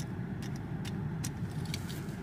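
Low, steady rumble inside a car cabin with the engine running, with a few faint clicks scattered through it.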